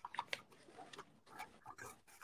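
Faint crinkling of origami paper being creased and pressed by hand, with a few soft crackles near the start.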